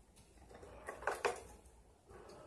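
A few quick metallic rattles of a wire rat cage, close together about a second in.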